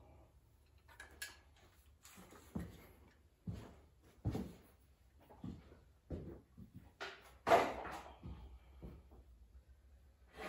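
A string of irregular handling knocks and clunks as a chainsaw is taken off the hook of a hanging crane scale and moved about, the loudest clunk about seven and a half seconds in.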